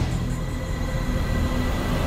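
Dramatic TV-serial background score: a low, steady rumbling drone with faint held tones underneath, following a rhythmic music cue.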